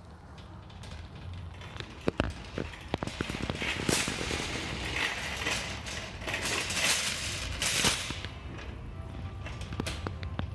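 Wire shopping cart rattling and clattering as it is pushed across a hard store floor, with a few sharp knocks about two to three seconds in.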